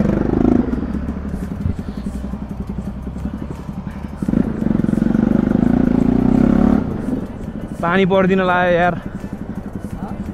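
Bajaj Pulsar NS 200 single-cylinder engine running as the motorcycle rides slowly. It gets louder under more throttle from about four seconds in until nearly seven seconds, then eases off. A voice is heard briefly near the end.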